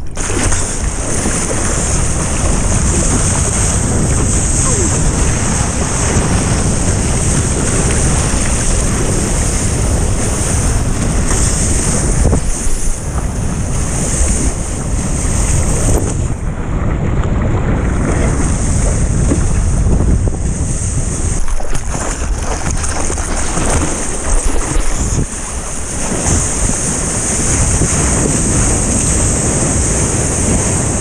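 Ocean water rushing and splashing around a surfboard-mounted action camera, with wind buffeting the microphone, as a longboard paddles into and rides a wave. The hiss is continuous and loud, briefly dulled about halfway through as spray covers the camera.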